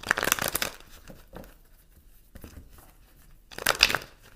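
A deck of tarot cards being shuffled by hand, two loud bursts of rapid card riffling and rustling, one right at the start lasting under a second and another near the end, with softer card rustles between.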